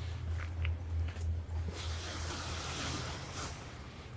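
Wind buffeting the microphone as a low, uneven rumble, with a faint hiss swelling in the middle and a few soft clicks.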